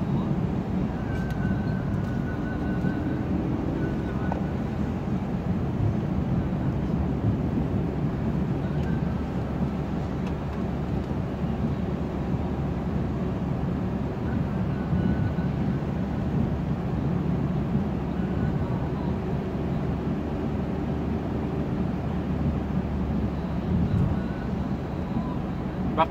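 Steady in-cabin driving noise of a petrol car moving slowly on a rain-soaked street: engine and tyres on wet tarmac, with rain on the car.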